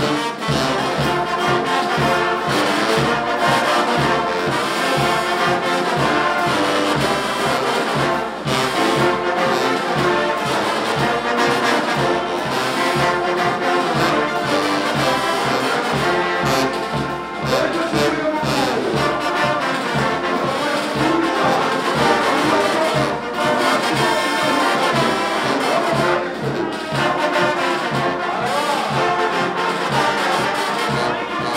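Live brass band, trumpets, trombones and sousaphones, playing loudly and continuously over a steady beat.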